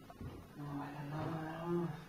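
A man's drawn-out, low vocal hum, held on one pitch for about a second and a half and swelling slightly near the end.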